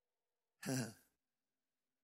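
A man's short sigh with a falling pitch, about halfway through, between phrases of a preached sermon.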